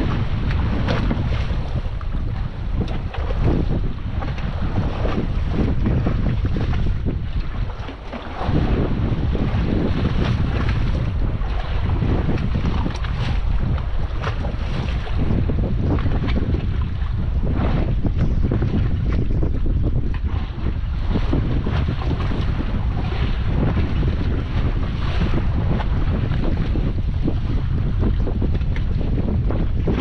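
Wind buffeting the microphone with a steady low rumble, over waves splashing against the side of a small fishing boat at sea. The rumble drops out briefly about eight seconds in.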